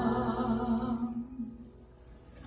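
A woman singing one long held final note into a microphone, which fades out a little past a second in.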